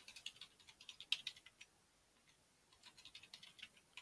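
Faint computer keyboard typing: a run of keystrokes for about a second and a half, a pause of about a second, then another run near the end.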